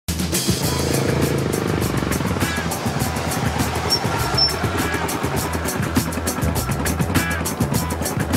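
Background music with a steady beat laid over a Honda XR dirt bike's engine running as the bike is ridden.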